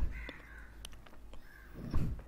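A bird calling faintly in the background twice, a longer call near the start and a shorter one past the middle, over a low hum.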